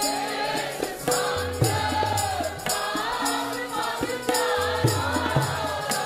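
Sikh keertan: women's voices singing a Gurbani shabad to harmonium accompaniment, with tabla strokes keeping a steady rhythm.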